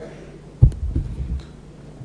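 A sudden heavy low thump, then a few softer low thumps over about half a second, picked up by a close desk microphone as a man sits down into his seat.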